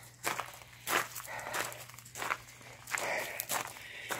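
Footsteps walking outdoors: about six even steps, a little under two a second.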